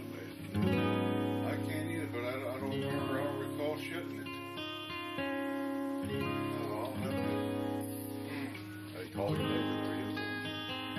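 Acoustic guitar music, plucked and strummed, playing steadily, with the playing coming in louder about half a second in.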